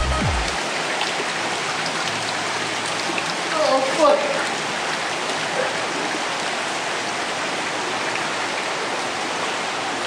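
Steady rushing of a shallow creek flowing over rocks, with a short voice-like call about four seconds in.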